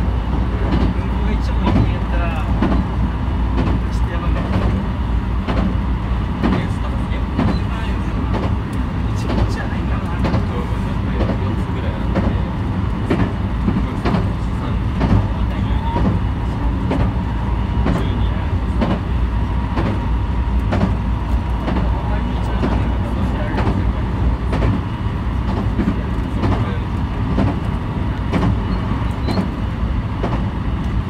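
Running noise of a JR 223 series electric train at speed, heard inside the train behind the driver's cab: a steady low rumble with a faint steady whine and frequent clicks and knocks from the wheels on the track.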